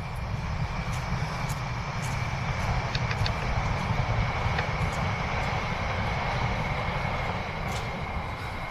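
Passenger train running along a line across fields, heard at a distance as a steady rumble with a thin, steady high whine over it.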